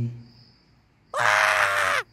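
A man's voice: a low held sung note trails off at the start, followed by a short silence. About a second in, a loud, high-pitched, drawn-out vocal cry begins.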